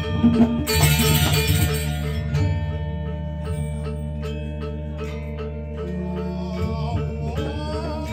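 Balinese gamelan music: struck metallophone notes ringing over a low sustained tone, loud for the first two seconds, then softer.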